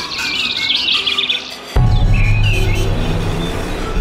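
Birds chirping in a produced music bed. A little under halfway through, a deep, steady low tone starts suddenly beneath the chirps and keeps on.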